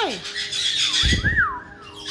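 A caique gives a single short whistle that rises and then falls, about a second in, over faint chattering from other caiques. A low thump comes at the same moment.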